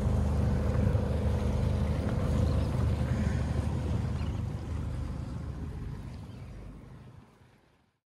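Sailboat's engine running steadily under way, a low hum with wind and water noise over it, fading out over the last few seconds.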